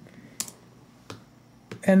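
Two separate clicks of a computer keyboard key, about two-thirds of a second apart, as a selected placeholder photo is deleted in the layout program.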